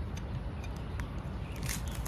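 A few faint clicks and a short scraping rasp near the end as an aluminium antenna arm is twisted by hand onto its metal base on a ground rod, over a steady low rumble.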